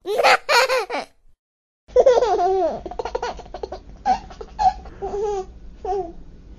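High-pitched laughter: two short bursts of laughing, a second of silence, then a long stretch of laughing from about two seconds in.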